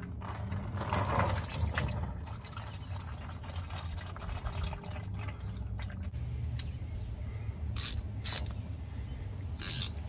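Engine oil pouring from the open drain plug of a 1.8 L Honda Civic engine into a plastic drain pan, a steady trickling stream. A few sharp clicks come in the last few seconds.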